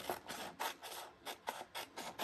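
Scissors cutting a printed sheet of sublimation paper: a quick, uneven run of short snips, a few each second.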